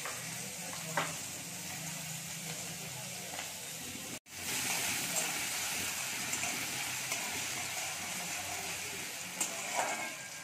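Diced potatoes sizzling in hot oil in an aluminium kadai, with a spatula stirring them against the pan. The sizzle cuts out for an instant about four seconds in, then comes back louder.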